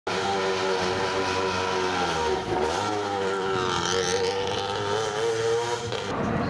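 Peugeot 207 rally car's engine running at low, fairly steady revs as the car drives slowly, with a brief dip in revs about two and a half seconds in before it picks up a little again.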